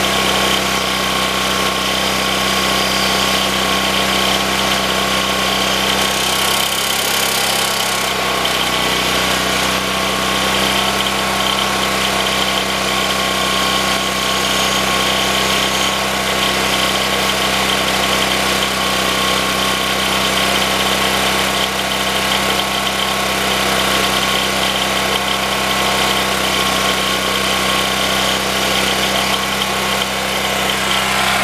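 Portable gasoline generator running steadily at constant speed, with a steady whine on top from the electric start-up blower it powers; a brief hiss comes about six seconds in.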